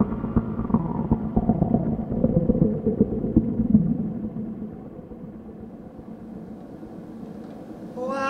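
Modular synthesizer playing a dense, rumbling low electronic texture with a few held tones over it. About halfway through it thins out and drops to a quieter steady drone.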